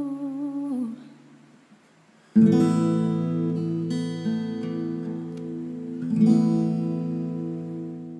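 A singer's voice holds a note with vibrato that fades out in the first second. After a short pause, an acoustic guitar strums a chord about two and a half seconds in and another near six seconds, each left to ring and fade.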